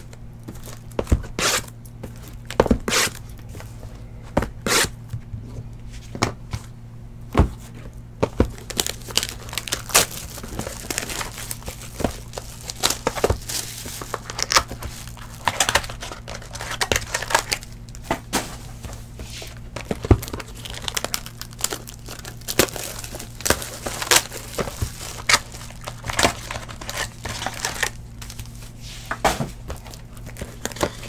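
Cardboard trading-card hobby box being opened and its wrapped card packs handled: a continuous run of wrapper crinkling, tearing and small clicks and taps, busier from about eight seconds in, over a steady low hum.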